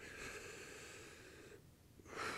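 A man's slow, faint breath, lasting about a second and a half and fading out, as he leans his chest into a lacrosse ball for a soft-tissue release.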